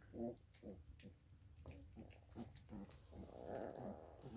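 A litter of three-week-old chocolate Labrador puppies eating gruel from one bowl: faint short grunts and squeaks among wet eating noises, a little louder near the end.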